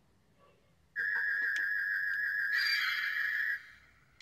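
Electronic light-beam sound effect from an Ultra Replica Beta Capsule toy's built-in speaker: a steady high whine starts about a second in, turns harsher and buzzier midway, and cuts off shortly before the end.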